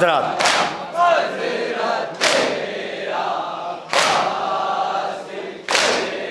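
An anjuman of men and boys chanting a noha in chorus, with a sharp, loud group strike about every 1.7 seconds in time with it, the unison chest-beating (matam) of the mourners.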